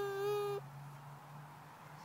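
A toddler's high, drawn-out vocal sound, one long held note ending about half a second in, followed by a faint steady low hum.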